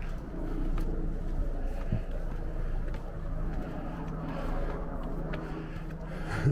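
Outdoor ambience of people on granite steps: faint voices around, a low steady hum, and a few light footsteps on the stone.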